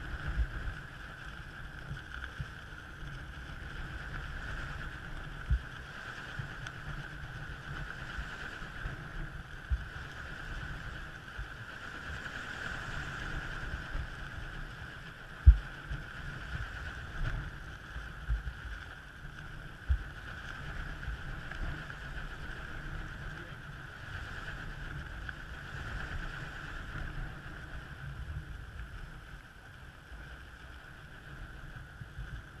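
Wind buffeting the microphone in a gusty low rumble with scattered knocks, the loudest a little past halfway, over a steady high hum.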